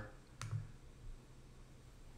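A single computer mouse click about half a second in, selecting an item in the software.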